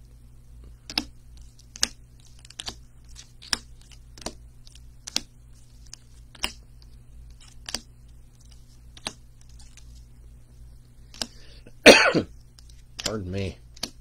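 Rigid plastic card holders (top-loaders) being set down one at a time on a tabletop and onto piles: about a dozen sharp clicks, roughly one a second. Near the end a person coughs loudly, then makes a brief sound with the voice.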